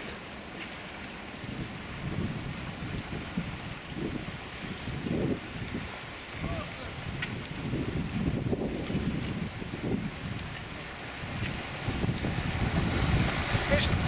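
Fast-flowing river water rushing, with wind buffeting the microphone in repeated low rumbling gusts.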